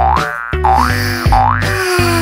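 Cartoon 'boing' sound effect played three times in quick succession, each one rising in pitch, over background music with a steady bass line.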